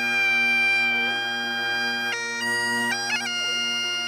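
Highland bagpipes playing: the steady drones sound under the chanter, which holds one long note for about two seconds, then moves through a few notes with quick grace notes between them.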